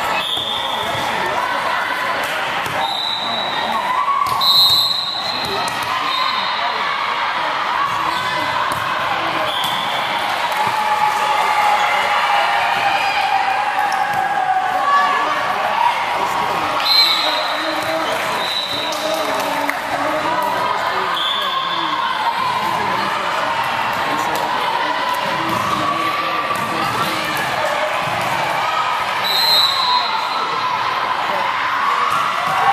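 Steady chatter of players and spectators in a large sports hall, with short high squeaks of shoes on the court floor. A volleyball is struck hard three times: about four seconds in, about halfway through, and near the end.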